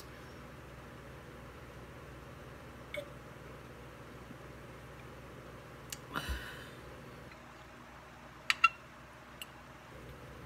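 Quiet room with a few small table sounds: a soft thud about six seconds in as a drink bottle is set down on the cloth-covered table, then two sharp, briefly ringing clinks of a fork against a ceramic plate near the end.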